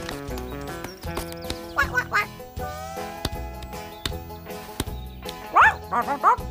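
Children's cartoon background music, with quacking, call-like animal-character vocal sounds over it. The calls are loudest near the end.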